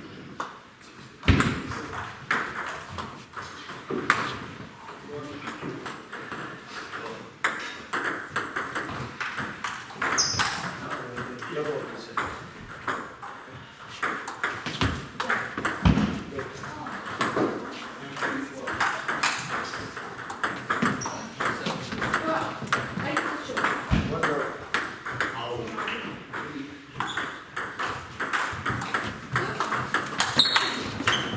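Table tennis balls clicking off bats and table tops in rallies, many short ticks through the whole stretch, from the near table and neighbouring tables, over background voices.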